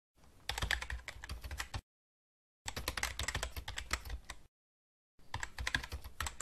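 Computer keyboard typing sound effect: three bursts of rapid keystrokes, each one to two seconds long, starting and stopping abruptly with dead silence between.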